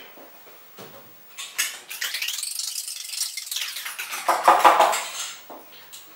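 Kitchen containers being handled: a few light knocks, then a few seconds of rustling and scraping as a plastic oil bottle is set down among the pots and containers on the floor.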